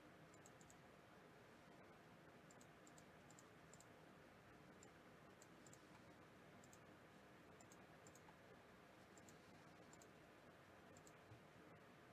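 Near silence: faint room tone with scattered soft computer mouse clicks, some in quick pairs, as spreadsheet cells are selected.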